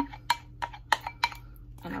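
A run of irregular sharp knocks and clinks as dressing is tipped and scraped out of a small ceramic bowl over a mixing bowl of cubed sweet potatoes, utensil and dishes knocking together.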